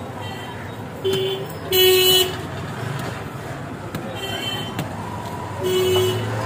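Vehicle horns honking in street traffic: four short toots of the same steady pitch, the loudest and longest about two seconds in, another right at the end, over a steady hum of road noise.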